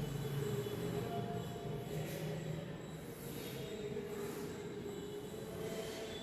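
Chalk drawn along a blackboard in long ruling strokes, scraping with squeaky tones that come and go.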